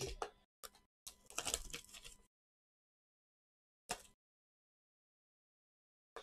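Gloved hands handling a cardboard trading-card hobby box: a few short rustles and taps in the first two seconds and another brief one about four seconds in, with dead silence between.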